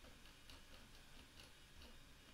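Near silence: room tone with faint ticking.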